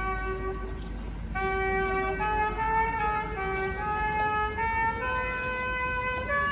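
Music: a trumpet-like brass melody of held notes stepping up and down, with a short break about a second in.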